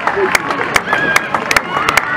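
Spectators clapping in a steady rhythm, about two and a half claps a second, over crowd chatter and voices.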